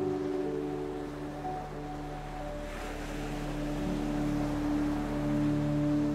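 Slow ambient music of long held chords over the wash of ocean surf, with one wave swelling up about halfway through.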